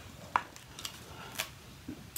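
A few light, sharp clicks and taps from a hardcover picture book being handled and its pages turned, the loudest about a third of a second in.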